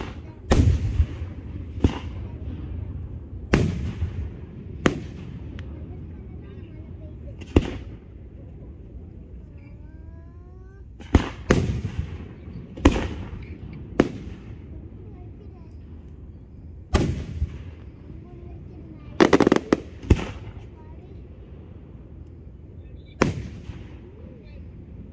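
Aerial fireworks shells bursting overhead: about fifteen sharp booms, each with a trailing echo, coming a second or two apart, with a lull in the middle and a quick run of bursts about three-quarters of the way through.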